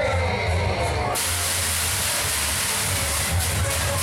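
Loud fairground ride music with a steady bass beat. About a second in, a loud hiss, like a jet of compressed air, starts suddenly and keeps on over the music.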